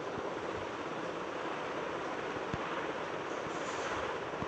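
Steady background hiss with a few faint ticks.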